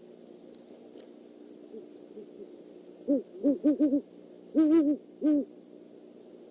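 Great horned owl hooting: a quick run of four short hoots, then a longer hoot and one last short one, low and even in pitch.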